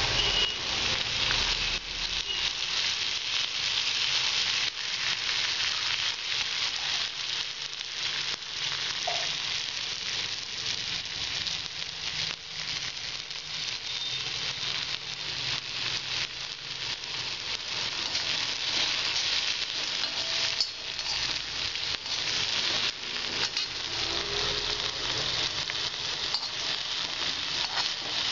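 Sliced red onions frying in hot oil in a pan, a steady sizzling hiss with many small pops.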